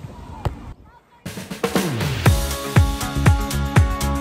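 Faint ambience with a single click, a brief dropout, then electronic background music comes in with a deep kick drum that falls in pitch, beating about twice a second.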